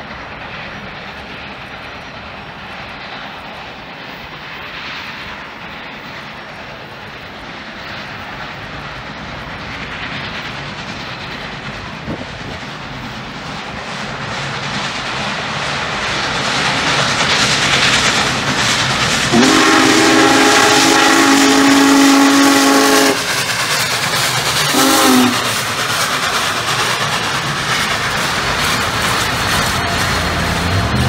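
Union Pacific Big Boy 4014 steam locomotive approaching out of a tunnel and across a trestle, its running noise growing steadily louder. Its steam whistle sounds one long blast of about four seconds and then a short toot, after which the train rolls past close by with loud rail and running noise.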